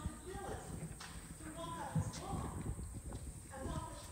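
A voice speaking at a distance, unclear and broken up, over irregular low knocks and taps.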